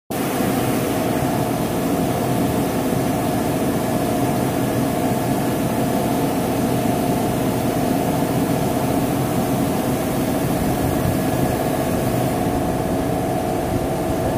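Circular interlock knitting machine running, a loud steady mechanical whir with an even, unbroken hum.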